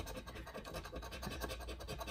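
A large metal coin scratching the latex coating off a scratch-off lottery ticket in rapid, even back-and-forth strokes.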